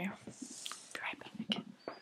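A young woman whispering softly, in short broken fragments.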